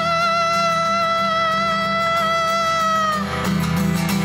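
A female singer holds one long note over acoustic guitar accompaniment, wavering at first and then steady; the note ends about three seconds in and the guitar strums on alone.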